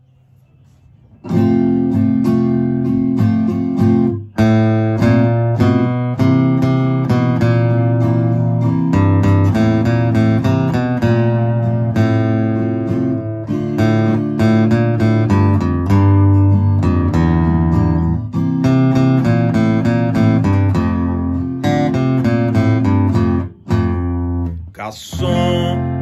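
Acoustic guitar playing a bass-string riff in F major: a melody picked on the low strings, with chromatic runs, under chords. It starts about a second in and stops shortly before the end.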